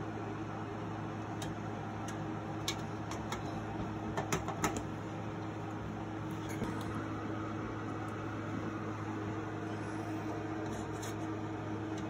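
Steady low electrical hum, with a few small metallic clicks and taps, most of them in the first five seconds, as a screwdriver turns screws into a hard drive through a steel PC case's drive cage.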